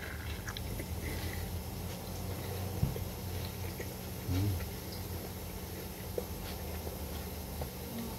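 A man biting into a burger and chewing it with his mouth closed: faint wet chewing and mouth clicks over a steady low hum, with one short low hum from his voice about four seconds in.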